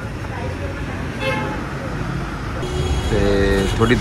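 Busy street background noise with a vehicle horn sounding: a brief faint toot about a second in, then a longer steady-pitched horn near the end.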